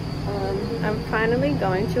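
People talking over a steady high-pitched whine and a low hum.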